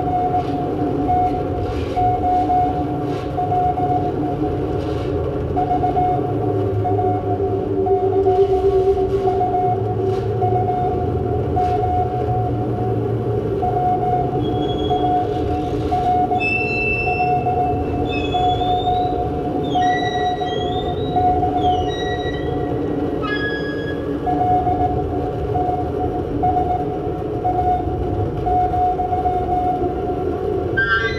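Live experimental electronic music: a dense, rumbling drone with a steady pulsing tone. About halfway in, short high notes that glide and step in pitch join it.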